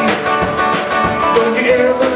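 Live band playing country-style music with electric guitar, bass guitar and drums, with regular drum hits under held guitar notes.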